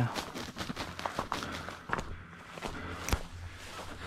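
Footsteps through grass and dry leaf litter, with irregular rustling and crackling, and one sharp snap a little over three seconds in.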